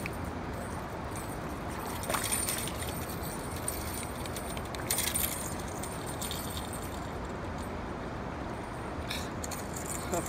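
Fishing reel being cranked against a hooked fish that is pulling hard, with short rattling clicks about two and five seconds in, over a steady rushing noise.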